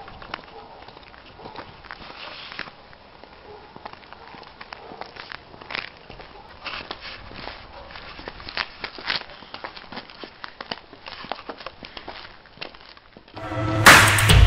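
Footsteps on a paved street: irregular scuffs and knocks of shoes walking. Loud music with a heavy beat cuts in suddenly near the end.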